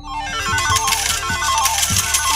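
Slot-machine jackpot sound effect: a rapid electronic jingle of stepping chime tones, with a bright shimmer of clinking coins, playing for about two seconds over background music.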